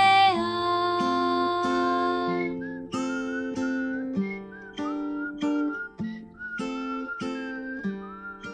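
Acoustic guitar picked and strummed as song accompaniment. A sung note is held for about the first two and a half seconds. From about three seconds in, a whistled melody sounds over the guitar.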